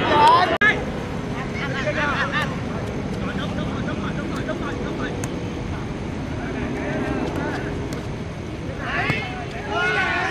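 Footballers shouting and calling out on an outdoor pitch, with a loud shout right at the start and more calls near the end, over a steady background noise.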